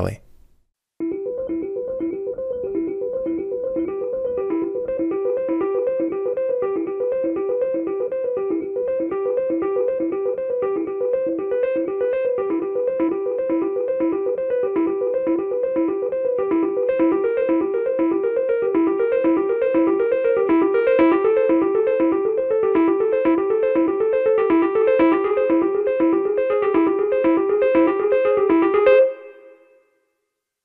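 Amped Elektra, a sampled 1970s Hohner Electra-Piano, playing a repeating broken-chord figure in even notes grouped 4+4+6. The four-note chords shift as one note moves down chromatically. It starts about a second in, grows slightly louder, and stops suddenly near the end.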